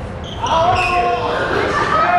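Court shoes squeaking on a wooden sports-hall floor as badminton players move about, a cluster of short high squeals starting about half a second in.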